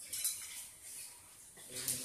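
Pestle working in a mortar of gado-gado sauce, scraping and knocking, with short sharp clatters about a quarter second in and again near the end.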